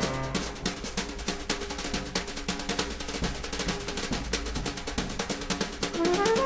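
Background music: a steady, rapid snare drum roll.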